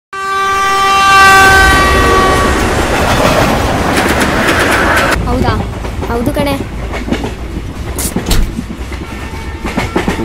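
Locomotive horn sounding one long steady note that fades over the rumble of a passing train. About five seconds in the rumble cuts off abruptly to train-carriage noise with clicks of the wheels on the rails and a brief voice.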